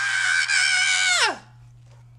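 A man's high falsetto vocal note, held for just over a second, then sliding steeply down in pitch and breaking off.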